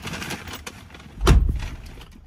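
A single heavy thump a little over a second in, with a few faint knocks around it, inside a car's cabin.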